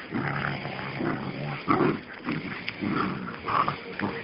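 A group of puppies growling and snarling in short repeated bouts as they play-fight.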